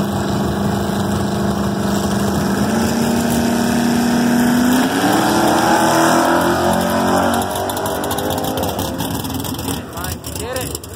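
A drag car's engine holding steady revs at the starting line, stepping up slightly, then revving hard on launch about five seconds in, its pitch climbing through the gears as it pulls away down the strip and fading after a couple of seconds.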